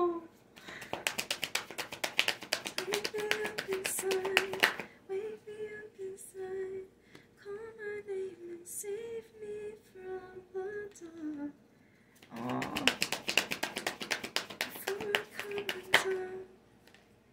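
A deck of tarot cards being shuffled by hand, a quick run of crisp card clicks, then a voice humming a slow wandering tune for several seconds, then shuffling again near the end.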